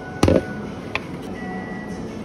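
A clear plastic blender jar set down on the counter with one loud knock, followed about a second later by a lighter click, over the steady hum of cafe machines.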